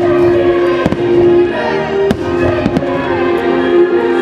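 Aerial fireworks bursting with about four sharp bangs roughly a second apart, over steady show music.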